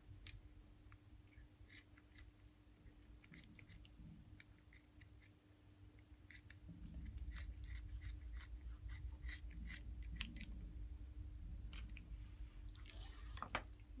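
Kitchen scissors snipping off a raw fish's fins, a run of sharp, irregular clicks as the blades cut. A low rumble joins from about halfway through.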